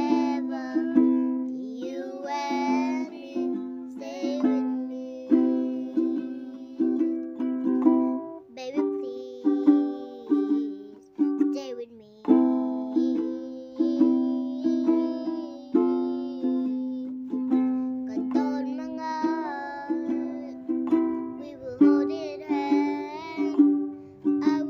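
A young girl singing over a strummed ukulele, the chords struck in a regular rhythm while her voice moves up and down above them.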